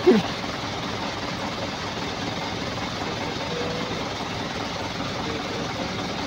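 Truck engines idling in a queue, a steady, even running noise with no change.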